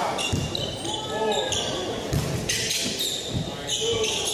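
A basketball dribbled on a hardwood gym floor, with a few thuds a little after midway, and sneakers squeaking sharply as players cut and drive.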